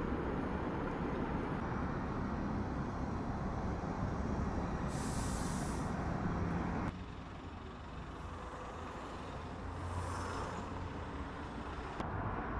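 Outdoor street ambience: a steady low rumble of traffic, with a short high hiss like a vehicle's air brake about five seconds in and a fainter hiss near ten seconds. The background drops in level abruptly just before seven seconds.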